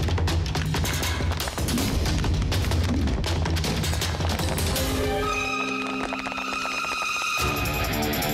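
Fast, driving action-film background score thick with rapid percussion hits. About five seconds in, the bass and beat drop out under a held high chord for about two seconds, then the full beat comes back.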